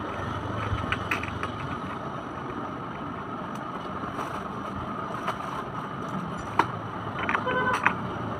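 Scattered clicks and knocks of hard plastic swing-car parts being handled and fitted, then a quick run of ringing metal clinks near the end as a spanner is put to a nut, over a steady background hiss.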